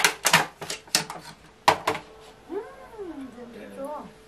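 Plastic and paper packaging crinkling in sharp, separate bursts as store-bought items are unwrapped by hand. About two and a half seconds in comes a short call that rises and falls in pitch, with a briefer one just before the end.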